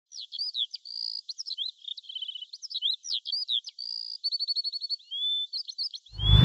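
Songbirds singing and chirping: a busy string of varied whistles, down-slurred chirps and quick trills, one trill running at over ten notes a second near the end.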